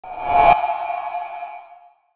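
Logo sting sound effect: a swelling whoosh that peaks in a hit about half a second in, then a ringing, ping-like chord that fades out over the next second and a half.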